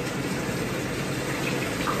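Water poured from a cup over a dog's back in a bathtub, splashing in a steady stream.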